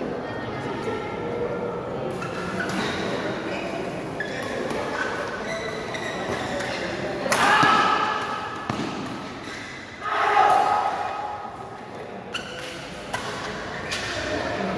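Badminton doubles rally in an indoor hall: sharp racket hits on the shuttlecock and players' footfalls over a steady murmur of spectators' voices. Two loud shouts come about seven and a half and ten seconds in.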